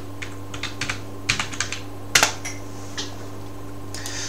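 Computer keyboard typing: a quick run of key clicks in the first two seconds, then a single louder keystroke a little past two seconds in.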